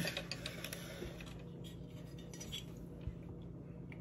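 A few faint, scattered clinks and taps of a metal cake-pop plate being handled and fitted into a Babycakes cake pop maker, over a steady low hum.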